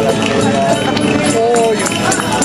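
Folk dance music playing under the talk of a crowd, with dancers' steps tapping and scuffing on the pavement as quick sharp ticks.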